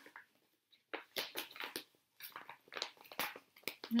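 Rustling and crinkling as cross-stitch projects are handled and sorted in a basket: an irregular run of short crackles and light clicks.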